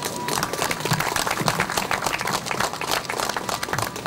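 Audience applause: many people clapping, swelling up about a quarter second in and continuing steadily.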